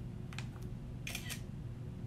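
A few faint clicks, one about a third of a second in and a close pair just after a second in, over a low steady hum: computer mouse clicks.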